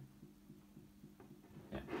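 Quiet bench room tone with a faint steady electrical hum, broken by a few tiny ticks; a short spoken word comes near the end.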